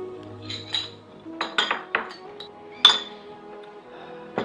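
Tableware clinking: about seven sharp, short clinks, the loudest near three seconds in, over soft background music with held tones.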